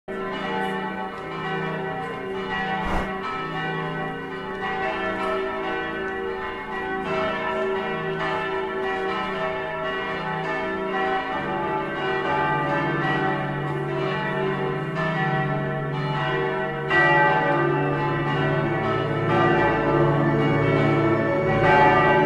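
Church bells ringing in a peal, several bells struck over and over with long ringing tones. A deeper bell joins about halfway, and the ringing grows louder near the end.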